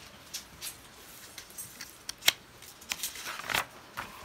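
A picture book's page being handled and turned: light paper rustling with scattered small clicks, the sharpest click a little over two seconds in.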